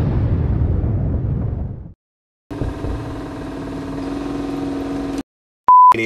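End-card sound effects: a noisy rumbling burst that fades away over the first two seconds, then after a brief silence a steady, pitched drone that cuts off suddenly, and a short, loud, pure beep just before the end.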